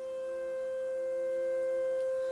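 Background score of a TV drama: a single sustained note, soft and pure like a held pad or bowl tone, slowly swelling in volume.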